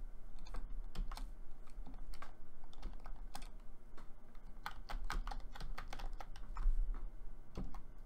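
Computer keyboard typing: irregular keystrokes, a few a second, with a low steady hum underneath.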